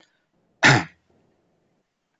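A man clears his throat once, a short burst about half a second in.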